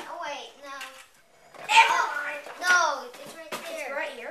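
Children's voices talking and calling out, speech only, with a few light clicks near the end.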